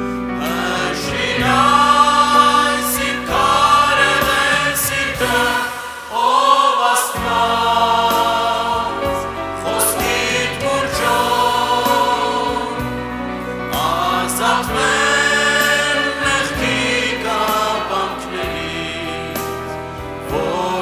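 Christian worship song: choir-like singing over sustained instrumental accompaniment.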